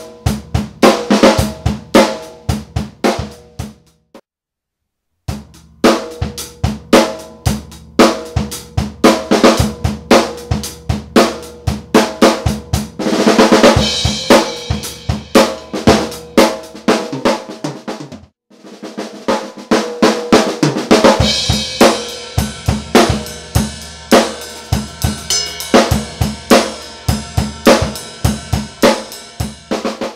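Drum kit played in short grooves with fills, centred on a Mapex Black Panther 12×7 maple snare with its snare wires set to the halfway (loose) setting and no muffling ring, so each snare hit buzzes a little longer. The playing stops for about a second after about four seconds and again briefly after about eighteen seconds, and crash cymbals wash over the hits around thirteen seconds and through the last third.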